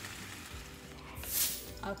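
Background music over the faint sizzle of diced potatoes frying in a cast-iron skillet, with a short falling whoosh about a second and a half in.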